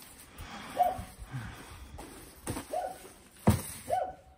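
Rustling of a pop-up tent's fabric sidewall as it is folded and put into a plastic crate, with one sharp knock about three and a half seconds in.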